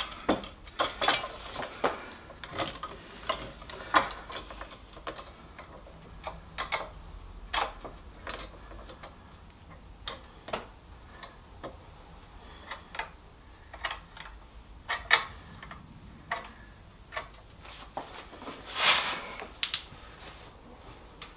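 Irregular metal clicks and knocks of F-clamps and a long bar clamp being positioned and tightened on a glue-up, with a longer scrape near the end.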